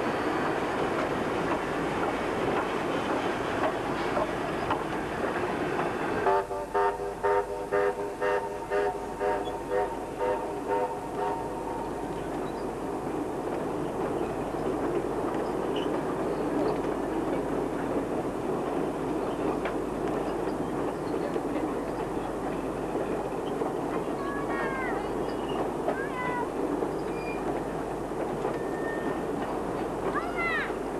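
Steam train with wooden passenger carriages rolling past over a bridge, a steady rumble and clatter of wheels on rails. From about six seconds in, a pitched sound pulses about twice a second for some five seconds. Birds chirp near the end.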